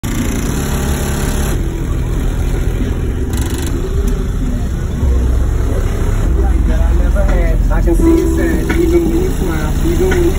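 Deep bass from two 12-inch Skar Audio subwoofers playing music in a pickup truck, heavy and steady, growing louder about five seconds in, with voices over it.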